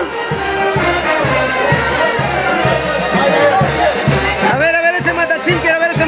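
Traditional Andean dance music from the Huancayo region, horns carrying a gliding melody over a steady low beat, with crowd voices underneath.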